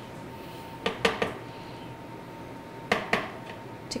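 A spatula clinking and scraping against a small glass prep bowl as tahini is scraped out into a food processor: a few brief clinks about a second in and again near three seconds, over quiet room tone.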